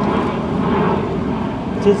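Steady low rumble of outdoor background noise, with a man's voice starting to read near the end.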